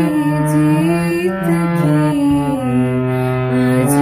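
Harmonium playing a slow shabad melody, its reeds holding each note and stepping to a new one about once a second over lower sustained notes. A voice sings along with the melody.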